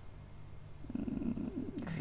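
A man's low hummed "mmm" of hesitation, starting about a second in, over a faint steady low electrical hum.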